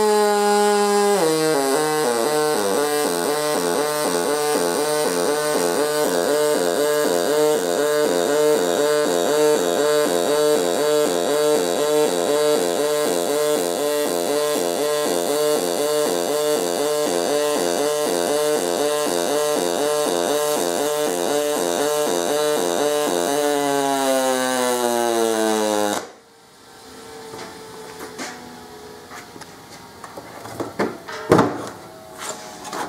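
Pulsed MIG welding arc on aluminum from an HTP ProPulse 200 running double pulse: a loud buzzing hum with a steady, even throb. Its pitch drops about a second in as the hot start ends, then slides down over about three seconds of crater fill before the arc cuts off suddenly, a few seconds before the end.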